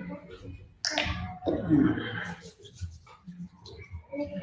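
A sudden sharp sound about a second in, followed by low, indistinct voices in the room.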